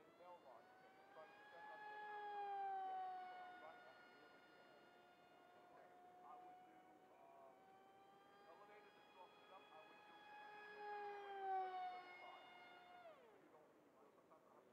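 Electric RC delta wing's brushless motor and 6x4 propeller whining in flight, heard from the ground. The whine swells and its pitch sags as the plane passes, once around two seconds in and again near twelve seconds, then drops away sharply just before the end.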